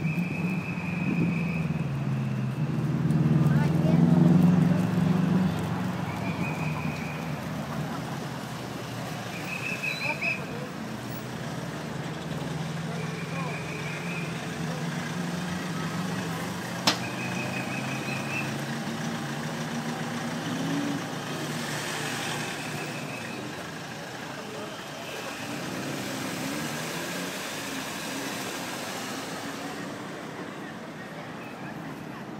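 Road traffic: car engines running and passing close by, loudest a few seconds in as a vehicle goes past. Short high trilled chirps come back every few seconds, and there is one sharp click near the middle.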